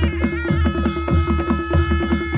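Nepali panche baja music: a shehnai holds a long high note over quick, even drumming on hand drums.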